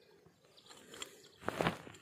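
Faint clicks and rustle of steel trimmer wire being twisted tight with pliers on a brush cutter's head, with a short voice-like sound about one and a half seconds in.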